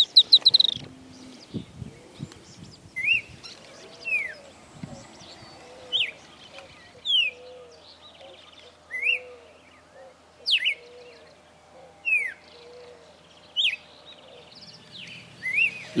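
Birds calling. A firewood-gatherer gives a quick run of notes at the very start. After that, single clear whistled notes, some rising and some falling, repeat about every one and a half seconds over softer, lower notes.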